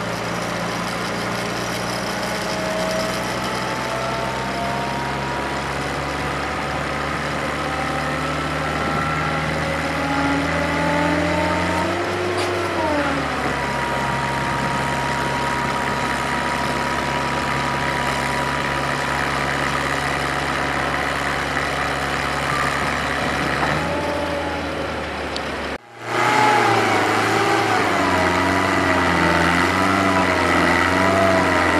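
Grove AMZ66 boom lift's Nissan A15 four-cylinder gas engine running steadily, with a higher whine that slowly climbs in pitch, dips about twelve seconds in, then holds steady. After a brief break near the end, the machine runs louder and the whine wavers up and down.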